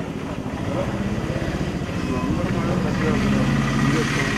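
A vehicle engine running steadily close by, growing louder through these seconds, with voices talking over it.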